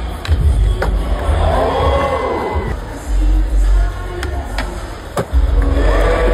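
Arena music with a heavy bass beat and a cheering crowd. Several sharp clacks of a skateboard landing and striking the course cut through, one just after the start and a few more near the end.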